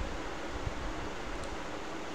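Steady hiss of room noise with a faint low rumble, and a soft low bump about two-thirds of a second in.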